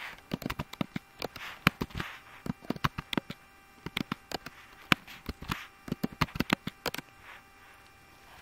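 Computer keyboard typing: irregular runs of quick key clicks, dying away about a second before the end.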